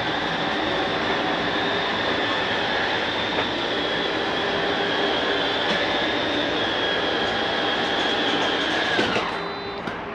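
Electric slide-out motor of a Heartland Torque T333 toy hauler running steadily as the slide room retracts: a high whine over a hum. It winds down and stops about nine seconds in, when the slide is fully in.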